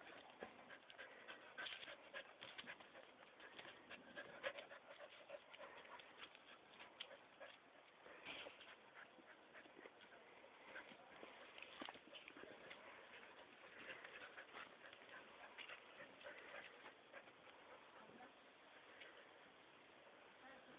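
Faint, intermittent dog sounds with scattered soft clicks, from a pair of mating dogs.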